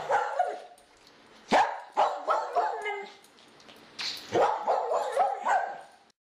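A dog barking and yipping in short clustered runs, with a sharp first bark about a second and a half in and another run of barks starting about four seconds in.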